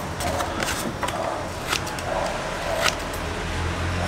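Small, freshly sharpened scissors snipping into a paper card: a few short, crisp snips about a second apart, over a low steady hum.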